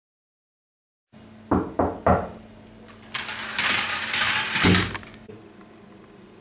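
Three quick knocks on a door, then about two seconds of rattling and scraping as the door is opened by its lever handle, ending in a thump.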